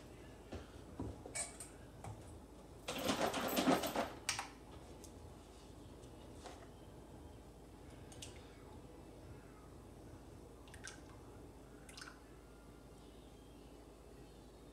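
Kitchen items handled on a wooden table: a few knocks, then a short clatter about three seconds in as a stainless steel bowl and a carton of liquid egg whites are moved onto a kitchen scale. After that, the egg whites are poured quietly from the carton into the bowl, with a few faint ticks.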